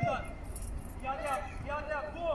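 High-pitched children's voices calling out across a football pitch, with a brief light jingle of metal in between.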